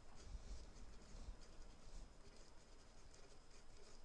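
Faint scratching of a felt-tip pen writing words on paper.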